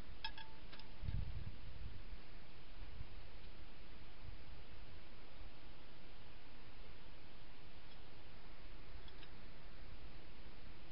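Steady background hiss with a light metallic clink just after the start and a brief low rumble about a second in, from a Jeep rear axle shaft being handled.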